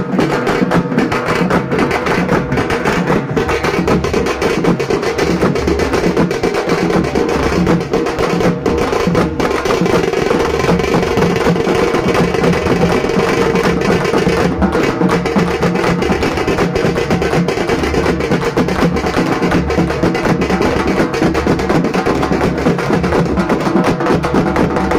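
Loud, continuous drum-led music with a steady repeating beat, played for the Kali dance.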